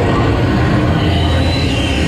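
Loud soundtrack of a dark ride's projection-screen scene: a steady heavy low rumble with music. A few thin high sliding tones come in about halfway.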